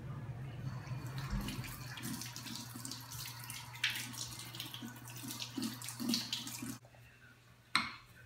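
Kitchen tap running steadily into a sink, shut off suddenly near the end, followed by a single sharp click. A steady low hum runs underneath.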